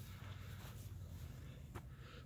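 Faint outdoor background: a low, steady rumble of wind on the phone's microphone, with a single short click near the end.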